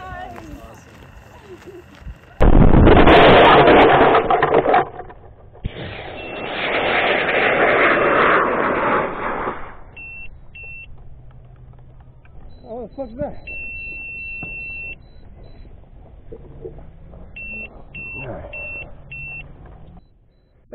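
Loud rushing noise in two long stretches, then a rocket altimeter beeping one steady high tone: two short beeps, one long beep, then four short beeps, the way such altimeters beep out the recorded altitude.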